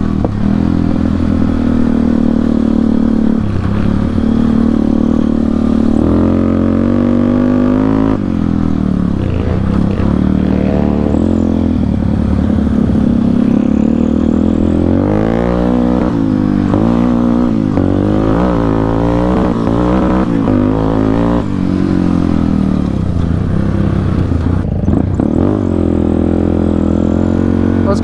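Yamaha Warrior 350's single-cylinder four-stroke engine, fitted with an FCR39 carburettor and a custom exhaust, revving up and down under a riding throttle, with a run of quick rises and falls in pitch in the middle. The rider says it is not happy with the cold and needs its air-fuel mixture adjusted.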